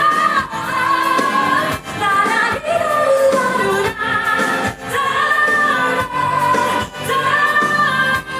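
A woman singing a pop song into a handheld microphone with band accompaniment, holding long notes that slide between pitches.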